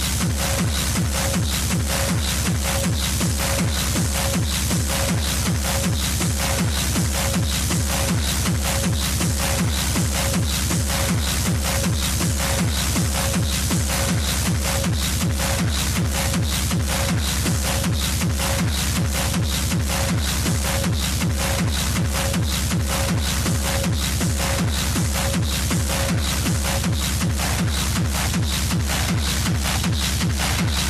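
Hard techno track: a fast, steady four-on-the-floor kick drum beat with busy high percussion over a heavy bass. A short mid-pitched synth note repeats evenly and drops out a few seconds before the end.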